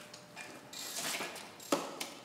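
Hand tools working on an engine on a stand: irregular small metallic clicks and scrapes, with one sharp click near the end.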